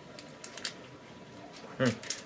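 A few faint clicks and crinkles of an advent calendar being handled as an item taped inside it is pulled loose, followed by a short hum of a man's voice near the end.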